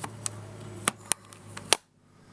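Several sharp clicks and taps from a marker being handled, spread irregularly over about two seconds, over a low steady hum. The sound cuts out abruptly near the end.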